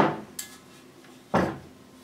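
Metal pump bearing frame being turned over and set down on a table: a knock at the start, a faint click, then a louder knock about a second and a half in that dies away.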